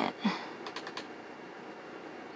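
A computer mouse is double-clicked: a short run of about four small, quick clicks just over half a second in.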